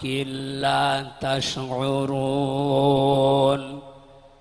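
A man reciting a Quranic verse in a drawn-out, melodic chant, holding long notes with a slight waver in pitch. There is one short break a little over a second in, and the recitation trails off shortly before the end.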